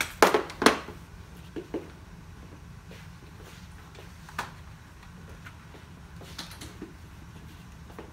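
Plastic and metal stroller parts clicking and knocking as seats are unclipped and lifted off the stroller frames. There are two sharp clicks in the first second, then a few fainter single clicks spaced out afterwards.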